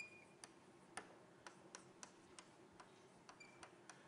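Near silence with faint, irregular clicks, roughly two a second.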